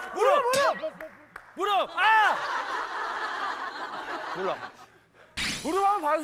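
Short exclamations and snickering laughter from several people.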